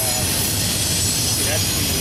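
Double-stack intermodal well cars rolling past on steel rails: a steady rumble of wheels with a thin, high, constant wheel squeal over it.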